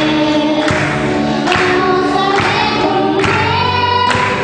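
Two young singers singing a song together, accompanied by strummed acoustic guitars.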